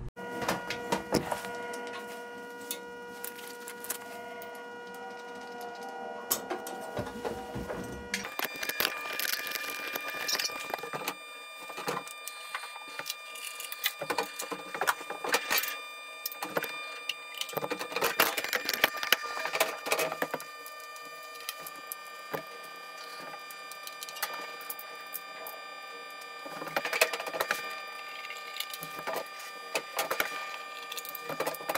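Scattered sharp clicks and knocks over a steady hum made of several fixed tones. The hum changes abruptly about eight seconds in.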